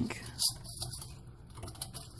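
Light clicks and rustling of fan cables being pushed under a tower CPU heatsink in a computer case, with a sharper click about half a second in.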